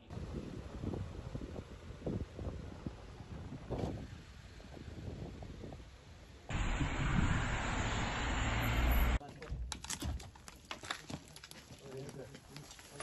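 Indistinct voices and low rumbling, then about two and a half seconds of loud wind buffeting the microphone that cuts off abruptly, followed by a run of sharp clicks and knocks.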